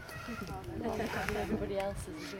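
Indistinct chatter of several people talking, with no clear words.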